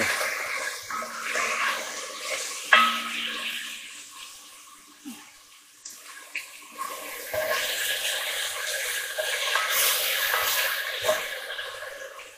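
Beef cubes sizzling in hot olive oil in a cast iron casserole dish, stirred with a spoon that knocks against the pot a few times. The sizzle dies down towards the middle and picks up again in the second half.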